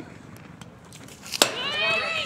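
Softball game sounds: a loud, sharp knock about a second and a half in, then excited high-pitched shouting from players and spectators as the ball gets away from the catcher.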